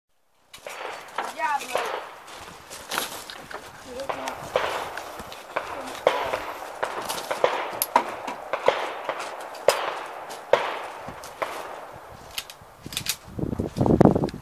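A pistol fired in a long string of shots at uneven intervals, a dozen or more, some followed by the ring of hits on steel targets.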